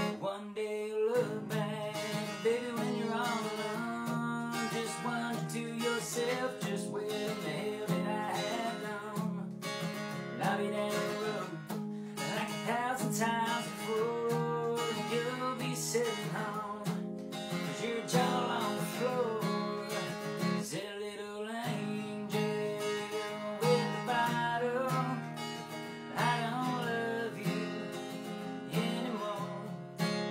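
Acoustic guitar with a capo being strummed and picked, with a man singing a country song over it.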